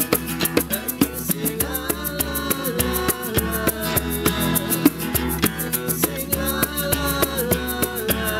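Live acoustic band music in an instrumental passage: two acoustic guitars playing over a djembe and a steady, even percussion beat, with a wavering melody line from about a second and a half in.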